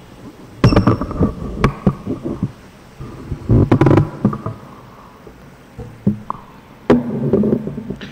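Irregular knocks and bumps of a microphone being handled, with quiet stretches of low hiss between them.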